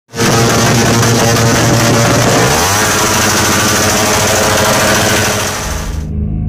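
Modified Suzuki Raider R150 Fi underbone motorcycle, a single-cylinder four-stroke, running very loud through a 'bomba' aftermarket exhaust. Its pitch rises about halfway through as the engine is revved.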